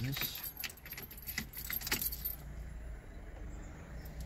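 Car keys jangling on their ring, with a few clicks, as the ignition key is turned to switch on the ignition; the jingling dies away about two and a half seconds in.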